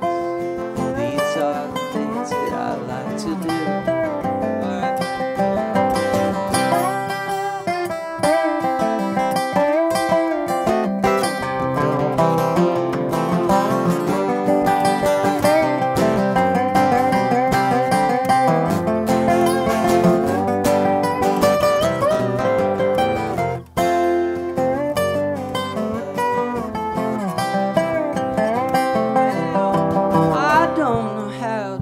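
Instrumental break: a resonator guitar played lap-style with a steel slide bar, its notes gliding into pitch, over a strummed acoustic guitar. The music drops out for an instant late in the passage.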